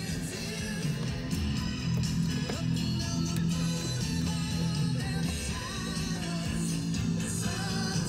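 A rock-and-roll style song with singing and guitar plays through the car's newly installed stereo speakers, with a steady bass line underneath.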